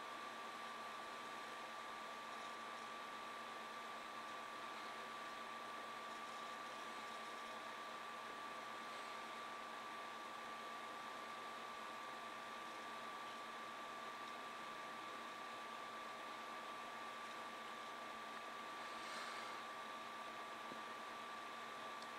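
Faint steady hiss with a thin, steady high-pitched whine: room tone and recording noise, with no distinct event.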